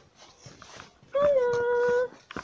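A dog howling: one long, steady note that begins about halfway through, dips slightly in pitch at its start, and cuts off abruptly.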